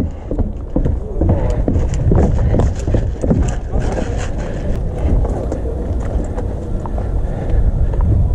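Running footsteps, first thudding down wooden stairs and then over grass, in a quick, even rhythm.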